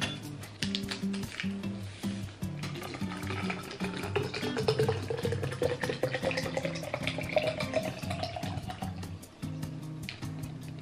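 Water poured from a plastic bottle into a plastic shaker bottle, the pitch of the pour rising steadily as the bottle fills, from about three seconds in until near the end. Background music plays throughout.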